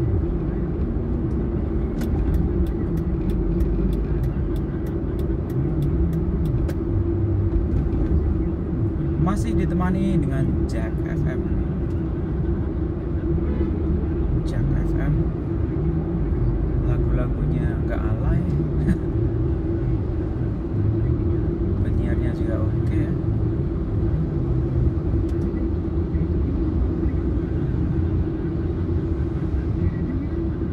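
Steady low rumble of a car's engine and tyres heard inside the cabin while driving in city traffic. Near the start comes a run of quick, even ticks, about three a second, lasting about five seconds.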